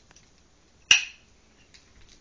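A single sharp click or snap a little under a second in, over faint room tone with a few soft ticks.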